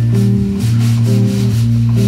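Jazz combo of archtop electric guitar, bass and piano playing an instrumental bossa nova introduction: sustained chords changing about every half second over a steady bass, with a light regular percussion rhythm.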